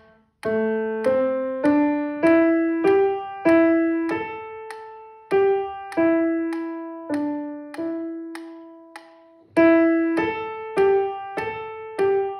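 Acoustic grand piano playing a slow, simple student piece in the middle register. The notes are struck about every half second, each ringing and fading, with one note held a little longer about three-quarters of the way through.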